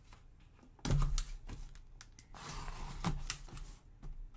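Cardboard box being handled and opened by gloved hands: a loud sharp knock about a second in, then a scraping rustle of cardboard with several more clicks in the second half.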